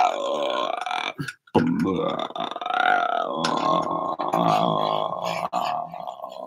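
A man's wordless vocal improvisation: low, guttural held voice sounds sung into a close microphone, one short and one long, with a brief break about a second and a half in and the pitch swelling up and back down in the middle of the long one.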